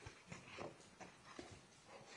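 Near silence with faint scattered knocks and shuffling: footsteps and clothing rustle of people moving through the courtroom gallery.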